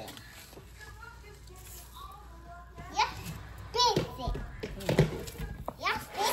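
A toddler babbling and squealing in short high calls, with two sharp knocks in the second half, the second the loudest sound.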